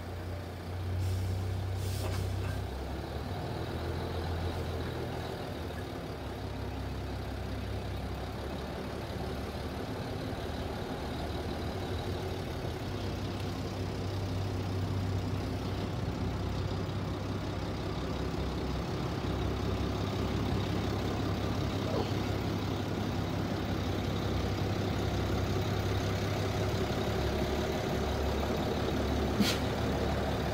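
Small narrow-gauge diesel locomotive engine running steadily at low revs as it moves slowly past, with a sharp metallic click about two seconds in and another near the end.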